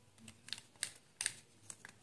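Light, sharp plastic clicks and taps of felt-tip sketch pens being handled, about five in two seconds, as the yellow pen is set down and a green one is picked up.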